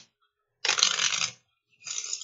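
A deck of cards being shuffled by hand: a rapid crackling riffle lasting about a second near the middle, and another starting just before the end.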